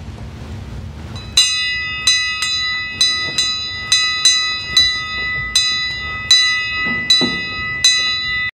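A bell struck over and over on the same high note, about two strikes a second, each strike ringing on into the next; the ringing starts about a second and a half in, after a low rumble.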